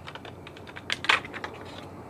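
Light clicks and taps of hands handling an old, rusted brake booster's steel shell and pushrod fittings, with one louder brief rub about a second in.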